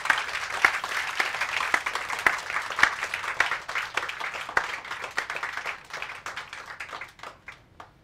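Audience applauding, a dense patter of clapping that thins out and dies away near the end.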